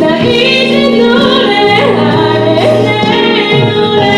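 A woman singing a solo worship song into a microphone over sustained accompaniment chords, her voice gliding and bending between held notes.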